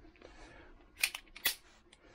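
A few sharp clicks from a Beretta 92 pistol being handled: a quick pair about a second in and one more about half a second later.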